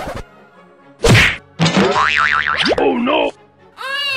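Comedy sound effects: a loud whack about a second in, followed by a cartoon boing whose pitch wobbles rapidly up and down, then slides away.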